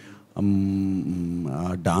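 A man's voice holding one long, steady hesitation sound, like a drawn-out "uhh", while searching for a word, then going back into speech near the end.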